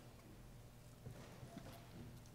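Near silence: room tone with a steady low hum and a couple of faint taps a little past halfway through.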